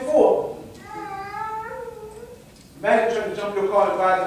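A man's preaching voice, broken in the middle by a quieter, high, drawn-out vocal sound lasting about a second and a half; then the preaching resumes.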